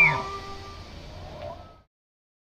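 The end of a bull elk's bugle, its high whistle dropping sharply in pitch right at the start, over background music whose sustained tones fade away until the sound cuts off to silence near the end.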